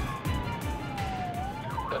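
Police car siren on a slow wail: one long falling sweep that turns and starts rising again just before the end. Background music with a steady beat runs underneath.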